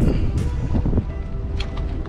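Background music with steady held tones, over wind rumbling on the microphone. In the first second there are rustles and bumps from the camera being handled.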